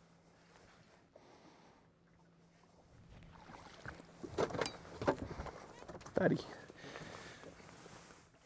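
A hooked bass thrashing and splashing at the water's surface beside the boat as it is reeled in, in a few loud bursts about halfway through, with short vocal exclamations among them.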